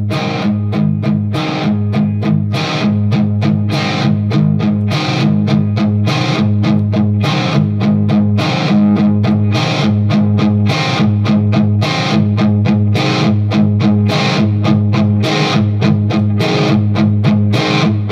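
Electric guitar played through a KHDK Ghoul Screamer overdrive pedal, strumming distorted chords in a fast, steady rhythm. The pedal's Body toggle is engaged to boost the midrange.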